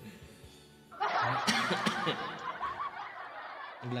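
A burst of laughter that starts suddenly about a second in and stops abruptly just before the end, over faint music.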